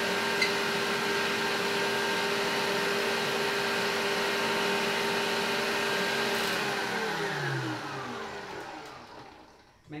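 Electric stand mixer running steadily, its beater working butter, sugar and egg for lemon curd in a stainless steel bowl. About seven seconds in it is switched off, and its motor whine falls in pitch and fades as it spins down. There is one sharp click about half a second in.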